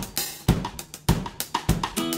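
Drum kit playing a short beat of kick, snare and cymbal hits, about two strokes a second, as the intro to a children's song.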